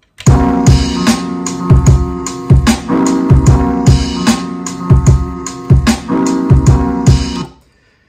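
Hip hop beat playing back from an Akai MPC One: kick and snare hits over a sustained pitched instrument part. It starts just after the beginning and stops abruptly about half a second before the end.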